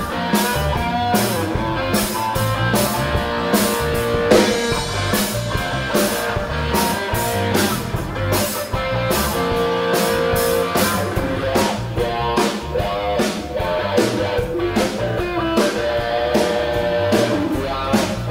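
Live rock band playing an instrumental groove: electric guitar and electric bass over a drum kit keeping a steady beat, with no singing.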